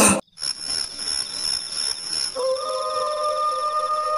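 Eerie synthesized intro sting: a held, very high electronic tone over a faint hiss, joined about two and a half seconds in by a lower held tone that slides up briefly as it enters.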